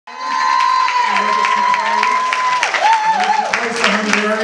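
Audience applauding and cheering. Over the clapping, one long high-pitched cheer is held for about two seconds, and a shorter wavering one follows.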